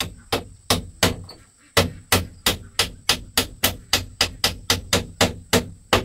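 Steady hammer blows on a bamboo frame, about three to four strikes a second, around twenty in all, with a short pause after the first second.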